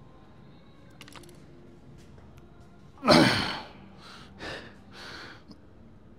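A man's loud, forceful exhale with a falling grunt about three seconds in, followed by three shorter sharp breaths: the breathing of a lifter straining through a heavy chest press rep.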